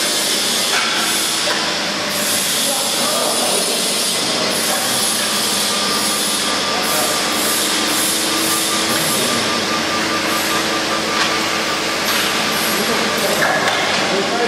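Steady mechanical running noise in a workshop: an even hiss with a faint low hum under it, holding the same level throughout.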